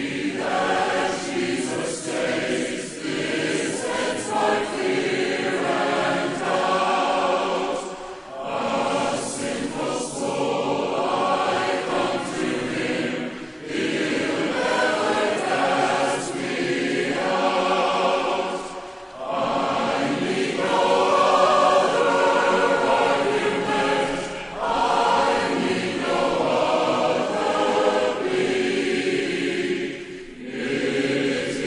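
Large church congregation singing a hymn together, line by line, with a short break for breath about every five or six seconds.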